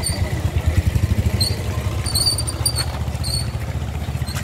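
Motorcycle engine running close by, an uneven low rumble, with several short high-pitched chirps over it.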